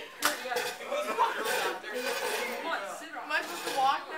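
Indistinct talking among a few people, with a short sharp click about a quarter of a second in.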